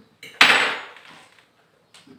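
A single sharp knock about half a second in, its noisy tail dying away over about half a second.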